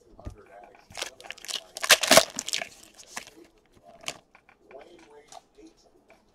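A foil trading-card pack being torn open and its wrapper crinkled, a quick run of crackling tears loudest about one to three seconds in, followed by softer rustling as the cards are handled.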